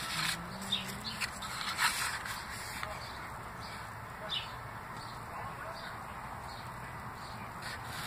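Steady low room noise with a few faint clicks and rustles from a plastic model truck cab being handled and turned.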